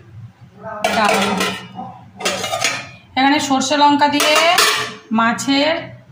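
Stainless steel bowls and lids clattering and scraping against one another on a stone counter as they are moved and uncovered. The sound comes in several bursts with a ringing metallic tone, the longest from about three to five seconds in.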